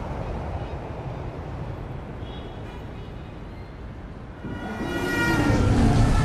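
Low, steady rumble of city traffic ambience. Over the last second and a half a louder held tone with several overtones swells up.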